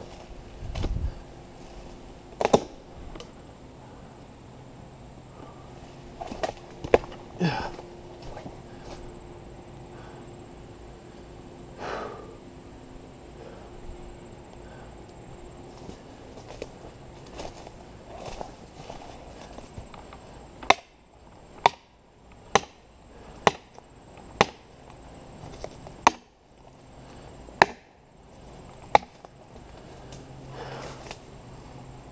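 Sharp knocks of a hand-held striking tool hitting wood. There are a few scattered blows early on, then a run of about eight strikes roughly a second apart in the last third. No chainsaw is running.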